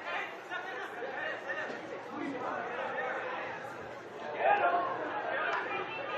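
Indistinct chatter of several people's voices, with one voice briefly louder about four and a half seconds in.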